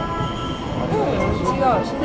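Disney Resort Line monorail running, a steady low rumble with a faint steady whine, heard from inside the car.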